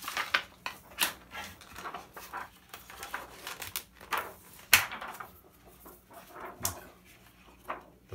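Thin plastic diffuser and film sheets from an LCD monitor's backlight rustling and crackling as they are handled and peeled apart, with one sharp snap a little past halfway.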